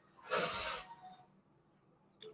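A single short breath, about a second long, near the start.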